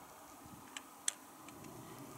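A few faint, sharp clicks of hiking on bare granite, the loudest about a second in.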